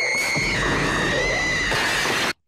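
A woman's long, high-pitched scream held on one note. About half a second in, a loud crash with a deep rumble comes in under it and lasts about a second.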